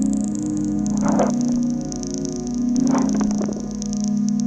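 Improvised electronic music from a modular rack of vintage nuclear test instruments: a held cluster of low drone tones with a thin high whistle above it. Two short bursts of noise swell up, about a second in and again about three seconds in.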